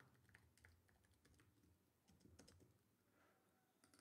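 Very faint computer keyboard typing: a string of irregular key clicks.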